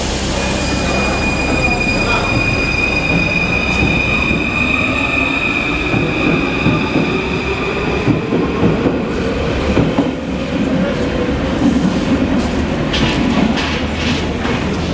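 An MF 01 Paris Métro train pulling out of the platform and accelerating. Its traction drive gives a high steady whine for the first half, a lower tone climbs slowly in pitch as it gathers speed, and the wheels clatter and knock over the rails as the last cars go by near the end.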